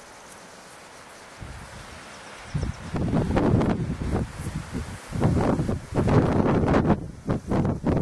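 Wind buffeting the camcorder microphone: a low rumbling noise that comes in loud, uneven gusts from about two and a half seconds in, over a quieter outdoor background.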